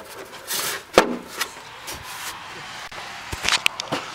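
Plastic engine cover being pushed down onto its rubber-clip mounting pins: rubbing of plastic and sharp clicks as it seats, the loudest click about a second in and a few more near the end.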